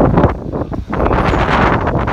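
Loud wind noise buffeting a handheld phone's microphone, rising and falling in gusts.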